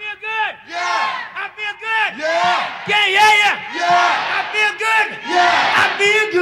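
A group of voices calling and whooping in rising-and-falling shouts, without drums or bass, in a vocal break of a soul/funk recording.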